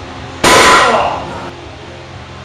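Loaded barbell with iron plates set down hard on a plywood platform at the end of a Pendlay row rep: one loud metallic clang about half a second in, the plates ringing for about a second.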